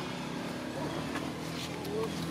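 Motorbike engine running steadily, with a few faint clicks and a short rising squeak near the end.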